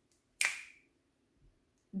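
A single sharp, snap-like click about half a second in, with a short ringing tail.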